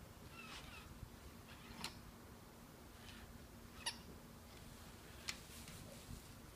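Battery-operated toy puppy on a wired remote giving four short, faint electronic yaps, spaced a second or two apart.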